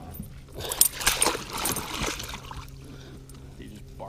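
A burst of splashing and rattling from about half a second to two seconds in, as a northern pike held in a landing net is unhooked from a bucktail with pliers. A faint steady low hum lies underneath.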